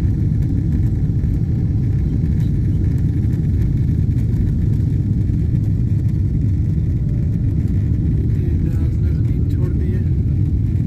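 Steady, loud low rumble inside an airliner cabin during the takeoff roll: the jet engines at takeoff power and the wheels running on the runway.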